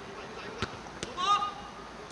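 Two sharp thuds of a football being struck, less than half a second apart, followed by a short shout from a player that is louder than the thuds.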